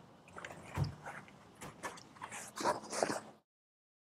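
Headrests being unclipped and pulled out of pickup-truck seats: a run of small clicks, knocks and rustles, busiest near the end, that cuts off to silence about three and a half seconds in.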